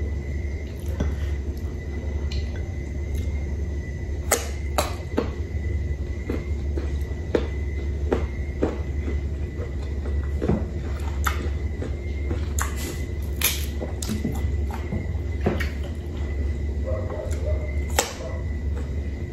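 Close-miked chewing of firm, unripe Indian mango, with irregular sharp crunches and wet mouth sounds, over a steady low hum.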